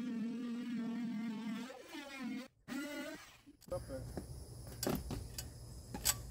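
Corded jigsaw running with a steady whine as its blade is plunged into the wooden wall, cutting out about two seconds in and starting again briefly. After that a low hum and a few sharp knocks follow.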